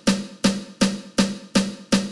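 Sampled snare drum from the Beast Mode virtual drum machine plugin, retriggered by note repeat: six even, short snare hits about 2.7 a second, eighth notes at 81 BPM, each cut short by the gate setting.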